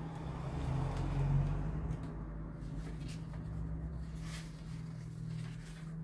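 A steady low hum under a low rumble that swells and fades over the first two seconds, with faint rustles of paper pages being leafed through around four seconds in.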